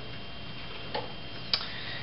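Two short ticks about half a second apart over a steady low background hum.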